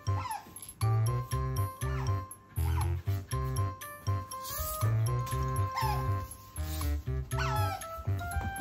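Background music with a steady beat, over which an Asian small-clawed otter gives several short, falling squeaks.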